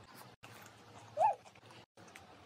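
Close-miked eating sounds of fried momos: faint chewing clicks and mouth noises. A little past a second in there is one brief high-pitched vocal 'mm' that rises and falls, the loudest sound.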